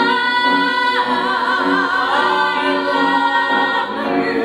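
Voices singing in harmony in a live musical-theatre number, holding long notes with vibrato; the held note drops in pitch about a second in.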